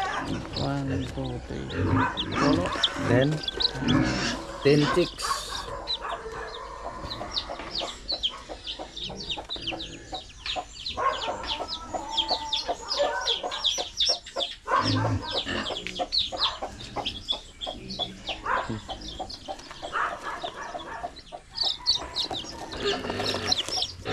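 Newly hatched chicks peeping: a dense stream of short, high-pitched cheeps, each falling in pitch, running almost without a break from a few seconds in.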